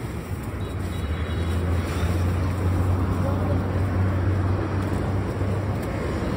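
Road traffic: a low engine rumble from passing vehicles over steady street noise, growing a little louder through the middle.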